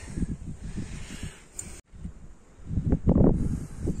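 Irregular low rumble of wind and handling noise on a phone microphone, with a few faint clicks, broken by a brief moment of silence just before two seconds in.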